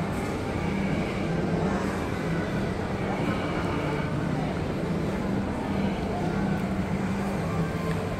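Shopping-mall background noise: a steady low hum with indistinct voices in the background.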